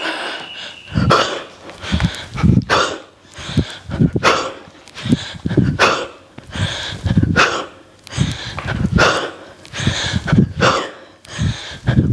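A person's forceful breaths, sharp and heavy, coming roughly once a second in time with repeated kettlebell swings.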